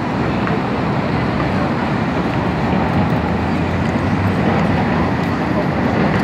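Steady, even roar of city traffic and construction-site machinery, with no single event standing out.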